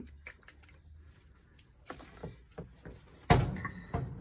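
Small clicks and taps of paint bottles being handled, then one sharp, loud knock about three seconds in.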